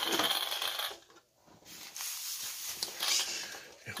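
Crinkling and rustling of a clear plastic bag holding an instruction manual as it is handled, in two stretches with a short pause about a second in.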